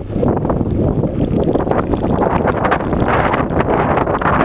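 Wind buffeting the microphone of a camera moving fast along a rocky dirt track, mixed with the rattle and knocks of the bumpy ride.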